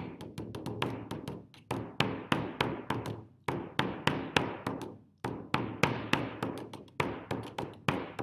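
Trailer music made of a quick run of struck, percussive notes, each ringing briefly and dying away, about four to six a second, with a couple of short breaks.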